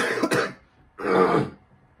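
A man clearing his throat twice: a rough burst at the start and another about a second in, from a man who says he is sick.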